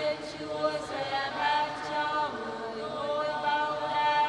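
A choir singing a slow liturgical chant, with long held notes and gentle slides between pitches.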